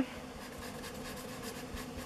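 Faint scratching of a thick black Sharpie marker coloring over glossy paper, with a faint steady hum underneath.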